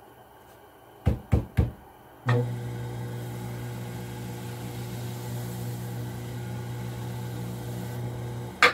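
Three quick knocks, then an electric potter's wheel is switched on and runs with a steady low motor hum as the wheel head turns.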